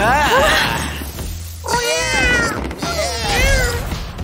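Three cartoon cat meows in a row, each one wavering up and down in pitch, over background music.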